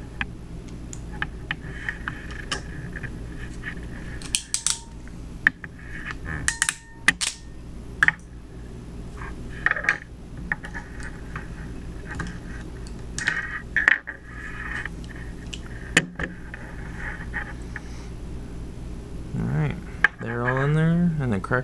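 Scattered small clicks and handling noise of a hand crimper and a clear plastic RJ45 modular plug on Cat5e cable as the plug is crimped on, with several sharp snaps along the way, one of the loudest late on. A steady low hum runs underneath.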